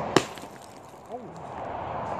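A frozen balloon, a ball of ice, thrown down onto concrete pavement and smashing into pieces: one sharp crack just after the start.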